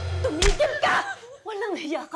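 Background music cuts off, then a single sharp slap lands about half a second in, followed by a woman's voice crying out.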